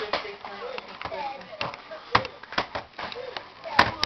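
Irregular sharp taps and knocks of a baby's hands slapping at a plastic toy, with short faint voice sounds between them.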